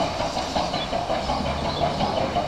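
Battery-powered TOMY toy Thomas the Tank Engine running along plastic track: its small motor and gearbox whir steadily with a rapid clatter of little ticks.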